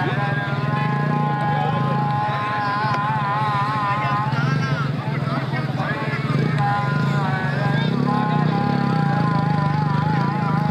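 A voice over a public-address loudspeaker holds long, wavering drawn-out notes with short breaks between them. A steady low drone runs underneath.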